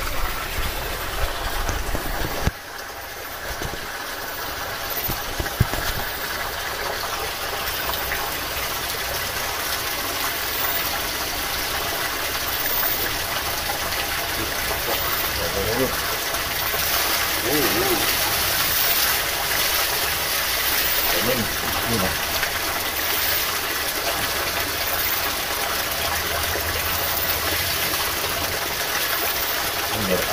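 Spring water pouring steadily from a pipe spout and splashing into a shallow rocky pool.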